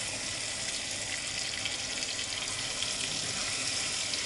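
Banana halves sizzling steadily in butter and caramelized sugar in a frying pan as they gently brown.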